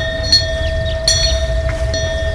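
Korean wind bell (pungyeong) with a fish-shaped vane ringing: the clapper strikes again about a second in, and the bright tone rings on steadily. A low rumble runs underneath.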